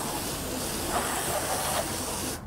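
Garden hose spray nozzle jetting water onto a golf cart's rubber floor, a steady hiss of spray as loose dirt and debris are rinsed off.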